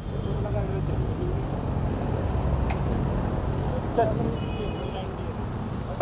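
Steady low rumble of motorcycle engines idling, with faint voices of people talking in the background.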